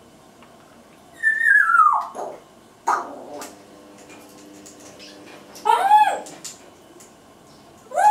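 Congo African grey parrot making whistle-like calls: a long call falling in pitch a little after a second in, a sharp click-like sound about three seconds in, and a short call that rises then falls about six seconds in, with another starting right at the end.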